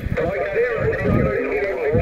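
Radio voice from a calling station coming through a ham radio transceiver's speaker, narrow-band and garbled, too unclear to make out the words. It is the sound of a station answering an activator's call on single sideband.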